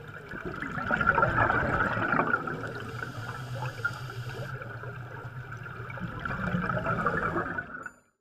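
Air bubbles bubbling and gurgling underwater, a steady bubbling that cuts off just before the end.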